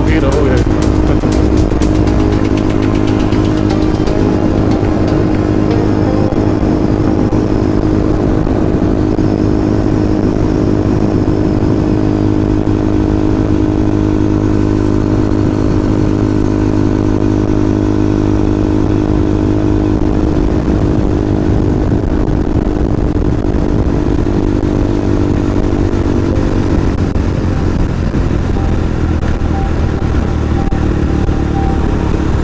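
KTM Duke 200 single-cylinder engine running steadily at highway cruising speed, with wind rumble on the camera's microphone. Near the end the engine note drops slightly as the bike slows.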